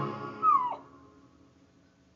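A puggle's brief howl, a high note sliding down in pitch about half a second in, as the classical music it sings along to dies away.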